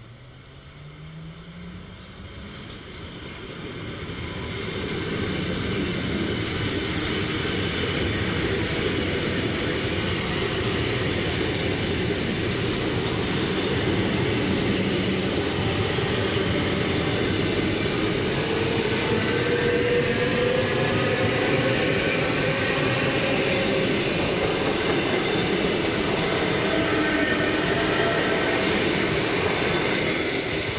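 EP2D electric multiple unit approaching and passing close by: its wheel noise on the rails grows over the first five seconds or so, then holds loud and steady as the cars go past. A faint rising whine runs through the middle of the pass.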